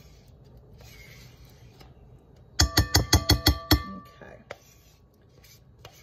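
A metal spoon rapped against the rim of a glass mixing bowl, a quick run of about eight ringing clinks lasting just over a second, midway through: the spoon being knocked clean of thick vanilla frosting. Before that, only a faint rustle of handling.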